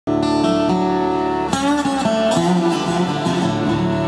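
Concertina and acoustic guitar playing a traditional Irish tune together. The concertina holds chords over strummed guitar, with the chord changing about a second and a half in and again near the middle.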